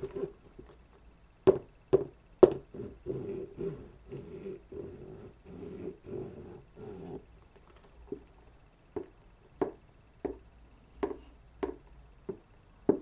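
Black suede heeled ankle boots tapped and scratched close to a microphone. Three sharp taps come about a second and a half in, then several seconds of quick scratching strokes on the boots, then slower single taps every half second to a second.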